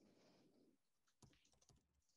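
Near silence with faint computer-keyboard typing: a few soft key clicks in the second half.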